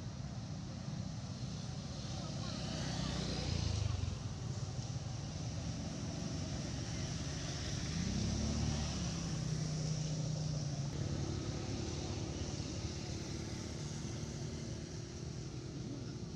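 A motor engine running, its pitch rising about eight seconds in and then holding steady, over a steady high hiss.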